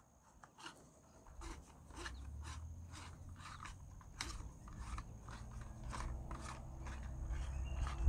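Faint, irregular clicking as the chain-cover knob on the side of a Worx 40V electric chainsaw is unscrewed by a gloved hand, over a low rumble of handling.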